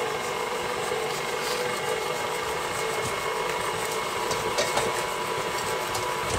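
KitchenAid tilt-head stand mixer running at a steady speed, its flat beater creaming softened butter and sugar in a stainless steel bowl. The motor gives an even hum with a steady whine.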